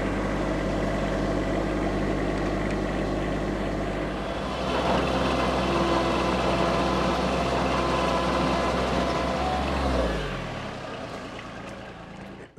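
Bobcat MT85 mini track loader's diesel engine running steadily. About four seconds in it grows louder as the machine is driven, and just after ten seconds it fades and its pitch falls as it throttles down.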